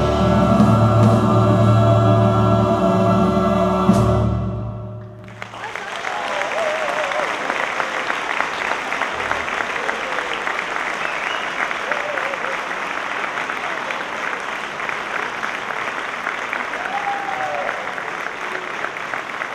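Wind band with txistus and a choir holding a loud final chord, ending on a last accented stroke about four seconds in. The audience then breaks into steady applause with a few scattered voices.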